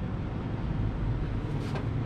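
A steady low rumble with a faint hiss above it.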